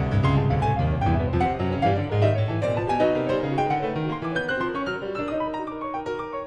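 Two pianos improvising together in a Latin style, a dense run of notes over a busy low bass line. About halfway through the bass drops away, leaving held notes and figures in the middle and upper registers.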